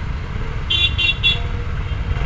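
A vehicle horn gives three quick, high-pitched toots about two-thirds of a second in. A steady low rumble of engines and traffic runs underneath.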